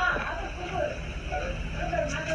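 Faint, low talk over a steady low hum.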